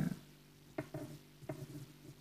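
Two light taps on a plastic cutting board, about three-quarters of a second apart, each followed by a brief soft sound, as fingers handle cucumber strips.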